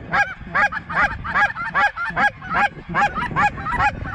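Snow geese calling: short, high, downward-slurred notes repeating rapidly, about four a second.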